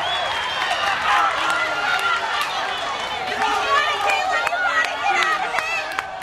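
Fight spectators shouting and yelling at once, many voices overlapping, with a few short sharp smacks scattered through.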